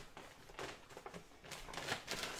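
Rustling and crinkling of a reusable shopping bag and the grocery packets inside it as a hand rummages through, in a few short rustles, the loudest near the end.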